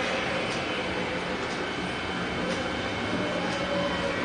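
Steady droning noise with a faint tick about once a second.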